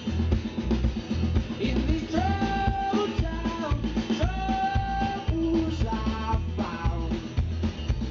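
Live rock band playing: strummed acoustic guitar, electric bass and a drum kit keeping a steady beat, with a melody holding two long notes about two and four seconds in.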